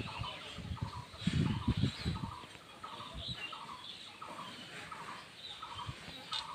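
A short chirp repeats evenly, about three times every two seconds, over cattle-shed ambience. In the first couple of seconds there are heavy low thuds and rustling, likely bulls feeding at a concrete trough.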